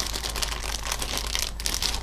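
Clear plastic bag crinkling as hands squeeze and turn it over, with the bagged kit tires shifting inside. It is an irregular run of small crackles.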